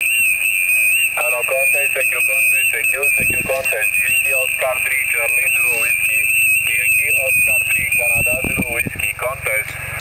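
Single-sideband shortwave voice received on a Yaesu FT-817 and heard through its speaker, indistinct, with a steady high-pitched whistle, a heterodyne carrier, running over it.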